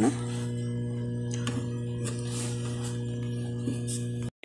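A steady, even low hum with a buzzy edge that holds one pitch without change, with a faint click or two.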